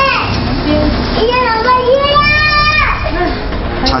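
A young girl crying and shouting at her mother in a high, strained voice, in an upset fit of separation anxiety. About two seconds in she lets out a long, high cry held for nearly a second.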